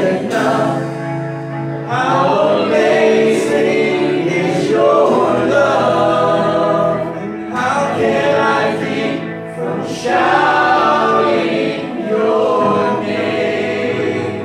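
Live contemporary worship song in sung phrases of two to three seconds: a man's voice leads into a microphone and other voices join him, over electric guitar and keyboard.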